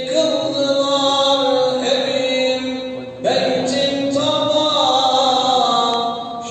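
A single male voice chanting an Islamic religious recitation in long, ornamented held notes that glide in pitch, with a short break for breath about three seconds in.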